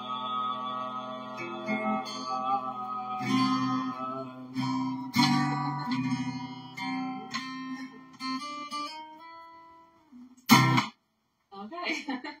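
The end of a song: a held sung note with a slight waver trails off in the first second, then an acoustic guitar plays closing strums and picked notes that ring out and die away about ten seconds in. A short, loud burst of sound follows soon after.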